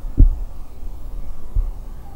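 Two dull low thumps about a second and a half apart, the first the louder, over a low rumble.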